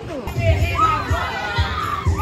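A group of children shouting and yelling together at play, coming in suddenly just after the start, with music playing underneath.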